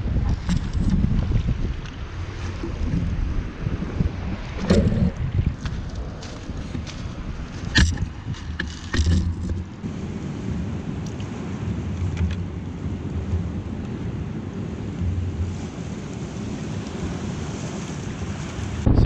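Wind buffeting the microphone, a steady low rumble with hiss, broken by a few short sharp knocks about five, eight and nine seconds in.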